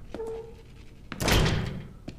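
A door: a latch click with a short squeak near the start, then a louder swing and shut a little after one second in.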